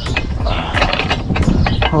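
Plastic paint cup of a gravity-feed spray gun being handled: the lid is twisted on and the cup fitted to the gun, a run of quick clicks, ratcheting and scrapes.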